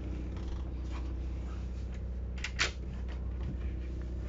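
Steady low hum of the motor coach's generator running, heard inside the coach, with a couple of sharp clicks about two and a half seconds in as the pantry cabinet door is opened.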